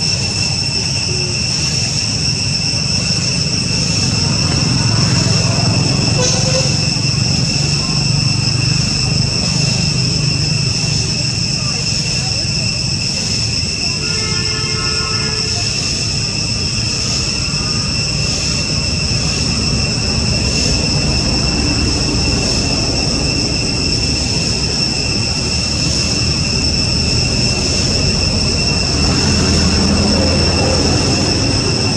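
Steady high-pitched insect drone, typical of cicadas, over a low rumble, with a short call about fourteen seconds in.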